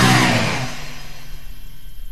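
The final distorted chord of a hardcore punk song ringing out and dying away within the first second, leaving a low steady hum from the amplifiers.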